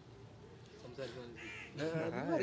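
A crow caws about a second into a lull in the conversation. Voices and laughter pick up near the end.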